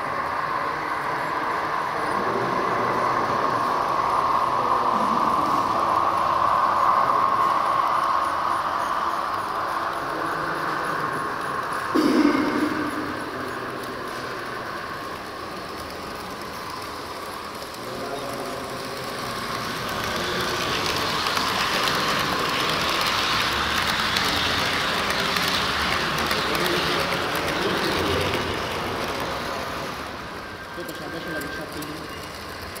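H0 scale model trains running on a layout: the steady hum of the model locomotives' electric motors and their wheels running over the track, with a brief knock about twelve seconds in.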